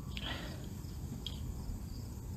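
Quiet outdoor ambience: faint cricket chirping over a low rumble, with two soft clicks.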